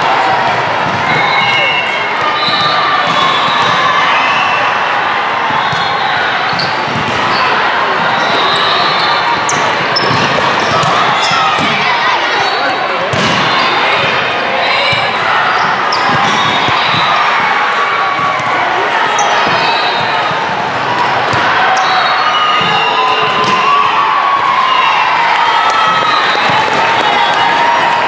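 Volleyball being played in a large hall: scattered sharp ball contacts and short sneaker squeaks over a steady, loud din of many voices from players and spectators.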